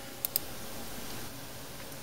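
Two quick computer mouse clicks about a tenth of a second apart near the start, over steady low room hiss.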